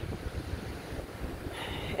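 Wind buffeting the phone's microphone in uneven gusts, over the steady wash of ocean surf.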